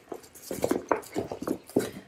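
Irregular clicks, taps and rustles of a collapsible folding bucket being handled and turned over in the hands.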